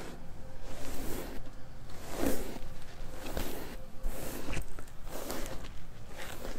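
A plastic paddle hairbrush dragged through long hair close to a clip-on microphone: repeated soft, hissy brush strokes, about one a second.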